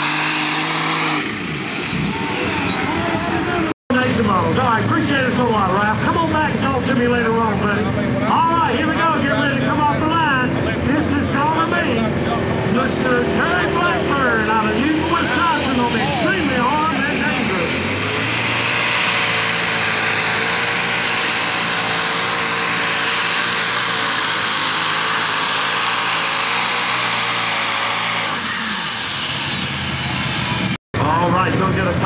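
Super Stock pulling tractors' turbocharged diesel engines running hard. Voices fill the middle stretch, then a rising whine leads into a loud, steady engine run at high revs.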